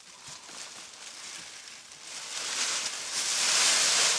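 Rustling and crumpling of tarp, cloth and plastic as stored items are handled and pushed aside, faint at first and getting loud about two seconds in.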